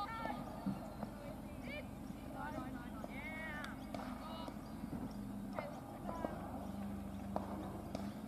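Open-air field sound at a cricket ground: players' distant calls and shouts ring out across the field now and then, with a few sharp clicks and a low steady hum.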